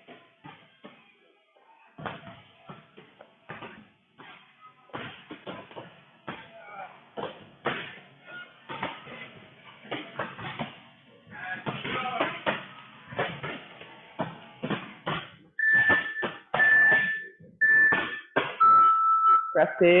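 Gym interval timer counting down the end of an interval: three short, high beeps about a second apart near the end, then one longer, lower beep. Before them come scattered knocks and thumps from people exercising.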